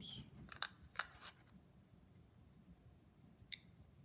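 Faint handling noises of small parts on a towel-covered bench: a short cluster of light clicks and rustles about a second in, then a single sharp click near the middle of the last second.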